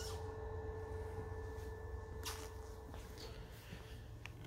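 Quiet room tone: a low steady hum with a faint steady tone above it, and a couple of soft brief rustles, one at the start and one about two seconds in.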